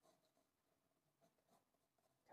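Near silence, with a few faint scratches of a pencil drawing on sketchbook paper.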